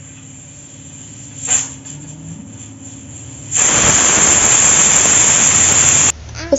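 A loud, steady hiss begins about three and a half seconds in and cuts off suddenly at the end, after a brief soft noise near the middle.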